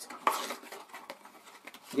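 Pieces of tailor's chalk clicking and rattling together in their box as they are sorted through by hand. The clatter is loudest about a quarter second in, then thins to a few light clicks.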